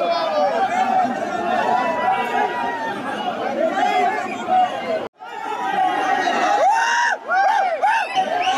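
A crowd of men talking over one another, several voices at once, with a brief sudden break in the sound about five seconds in.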